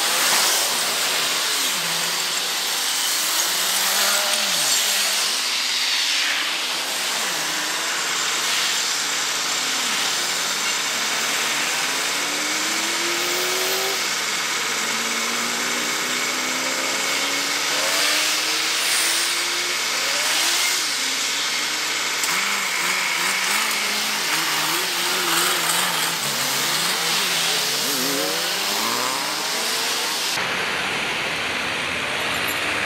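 Street traffic passing close by: cars driving through one after another, their engines rising and falling in pitch as they pass and pull away, over a steady hiss of tyres on asphalt.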